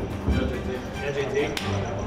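Voices in a corridor over background music, with a sharp slap of hands near the end as a high-five.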